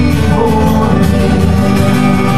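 Live worship band playing a praise song, with electric and acoustic guitars and a drum kit.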